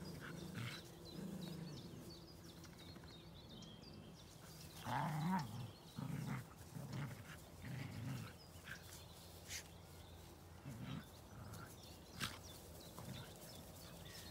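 Dogs playing rough in grass, with a run of low play growls from about five to nine seconds in and a few scattered clicks.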